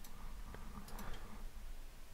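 A few faint, short clicks over quiet room noise and a low hum.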